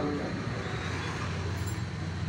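A steady low hum of a running motor.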